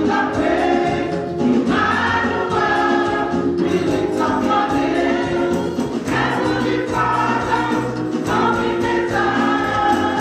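A group of women singing gospel music together into microphones, several voices at once in sustained phrases, with a steady low accompaniment underneath.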